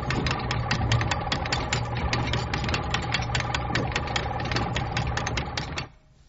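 Radio sound effect of a crane's winch running: a steady motor hum with rapid, regular clicking that cuts off suddenly near the end.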